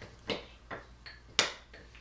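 Metal spoon stirring melted chocolate in a ceramic fondue pot, clinking against the pot a few times; the sharpest clink comes about one and a half seconds in.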